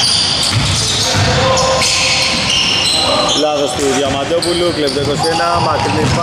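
Basketball game sounds on a hardwood court: a ball bouncing and brief high squeaks of sneakers on the floor. From about halfway on, voices call out over it.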